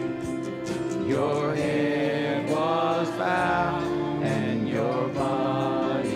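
A church worship band playing a slow song, with electric guitars, bass guitar and violin holding long notes. From about a second in, a man's voice sings slow, gliding phrases over them.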